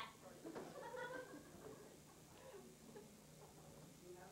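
A faint, distant voice speaking briefly, from about half a second to a second and a half in, followed by quieter murmur.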